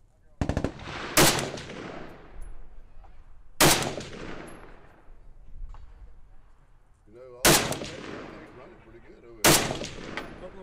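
Semi-automatic AK-pattern rifle firing four loud single shots two to four seconds apart, each trailing off in a long echo. A quick run of fainter cracks comes in the first second.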